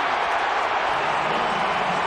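Steady stadium crowd noise from a football crowd reacting to a touchdown, an even wash of many voices with no single sound standing out.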